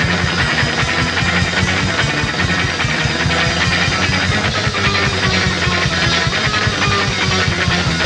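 Punk band playing live: loud distorted electric guitar over bass and fast, driving drums, with no vocals in this stretch.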